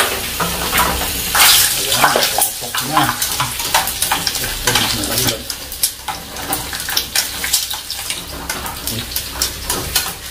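Pork skin pieces frying in hot oil in a saucepan, sizzling steadily, with frequent sharp clicks and scrapes of metal tongs stirring and turning them in the pot.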